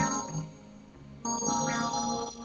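Electronic keyboard music: a chord sounding at the start and dying away within half a second, then another chord coming in about a second and a quarter in and held.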